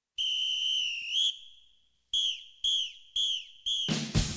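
Drum major's whistle giving the step-off signal: one long steady blast that flicks up in pitch at its end, then four short blasts about half a second apart, each dipping in pitch. The marching band's drums come in right at the end.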